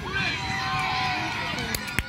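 Spectators shouting and calling out from the sideline of a youth soccer match, one voice holding a long drawn-out call through the middle. A few sharp knocks come near the end.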